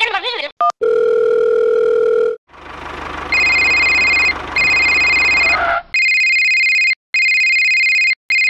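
Cartoon telephone sound effect: after a brief squeaky voice blurt, a steady dial-tone-like beep lasts about a second and a half. Then an electronic phone ringtone repeats in long on-off pulses, at first over a hiss.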